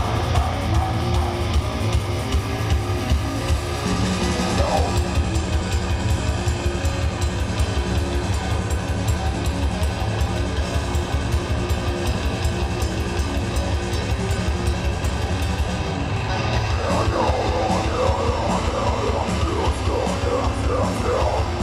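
Live metal band playing: distorted electric guitars and bass over fast, dense drumming.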